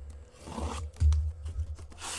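Utility knife slitting the packing tape along the top of a cardboard case, a short drawn swish of cutting followed by a dull knock about a second in and light clicks of cardboard being handled.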